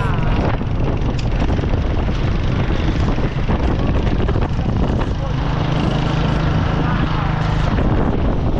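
A small motorcycle engine running steadily while riding, with wind buffeting the microphone.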